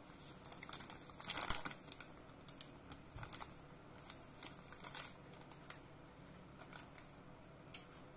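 Plastic cookie bag crinkling as it is handled. The crinkling comes in a dense flurry about a second in, then in scattered crackles, with a last one near the end.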